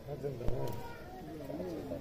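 Faint voices talking in the background, with one sharp click about half a second in.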